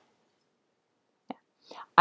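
Mostly near silence. About a second and a half in there is a short mouth click, followed by a soft in-breath as the speaker gets ready to talk again.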